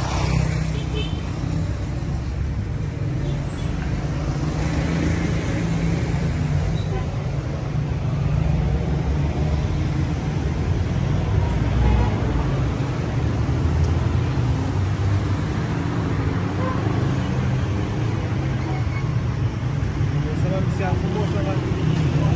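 City street traffic noise: cars and motorbikes running along the road, heard as a steady low din.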